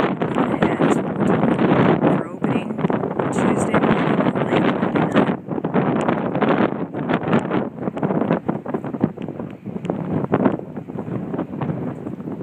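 Wind buffeting a phone's microphone: a loud, gusty rumble that surges and dips every moment.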